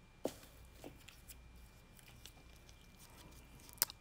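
Mostly quiet, with a few faint clicks and taps from small plastic nail supplies being handled, and one sharper click near the end.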